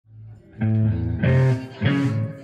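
Guitar music: held chords come in about half a second in and change twice more, roughly every half second, opening a song.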